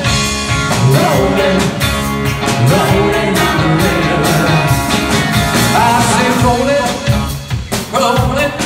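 Live rock band playing through the amps: Rickenbacker electric guitar, bass and drums, with a voice singing over them. The sound drops out briefly near the end before the band comes back in.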